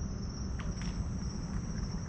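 Night insects, such as crickets, keep up a steady high-pitched trill, with a low rumble underneath.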